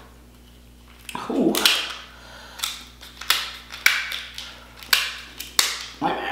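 Close-miked eating of king crab: a run of about six sharp, wet mouth smacks and clicks, roughly one every second after a quiet first second.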